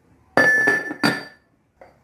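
Two sharp, ringing clinks about two-thirds of a second apart as a glazed ceramic cooking pot is handled on the stove, then a small click near the end.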